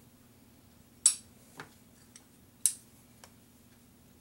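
Two short, sharp clicks about a second and a half apart from working at a wax injector and its rubber molds, over a faint steady hum.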